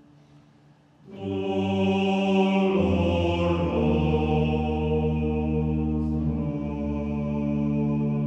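Slow sacred vocal music, voices chanting in long held notes that change pitch only a few times. It enters about a second in after a quiet start.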